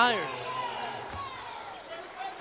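Quiet basketball arena ambience on a hardwood court: faint crowd noise and a soft ball bounce about a second in. It follows the tail of a commentator's word at the start.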